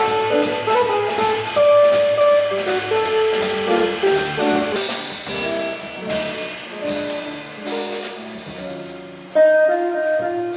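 Live small-group jazz: guitar, double bass and drum kit playing together, a melodic line over walking bass and cymbal strokes. A louder accent comes in near the end.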